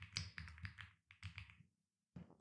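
Computer keyboard keys typed in a quick run of faint taps, with a short pause near the middle and then a shorter run.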